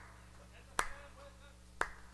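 One person clapping slowly near the microphone: two sharp claps about a second apart, one about a second in and one near the end.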